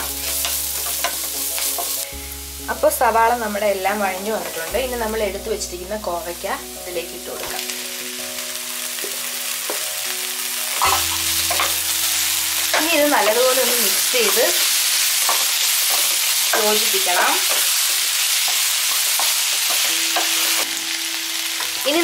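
Ivy gourd and onions stir-frying in oil in a nonstick wok: a steady sizzle with a wooden spatula stirring and scraping through, the sizzle growing louder about halfway through. Background music plays underneath, most plainly in the first half.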